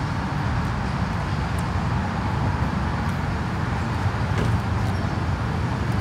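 Steady road traffic noise from a busy intersection: an even, continuous wash of sound, strongest low down, with no distinct passes or other events.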